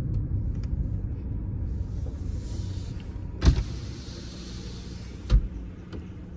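A car's electric power window motor whirring in two runs, each of about one and a half seconds and each ending in a thump at the stop, over the car's low engine and road rumble.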